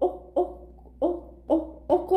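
A woman's voice in short, halting syllables, about two to three a second.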